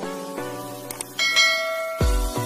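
Intro music of plucked pitched notes, then a couple of quick clicks just under a second in and a bright bell chime that rings on from about a second in: the click-and-bell sound effect of a subscribe-button animation.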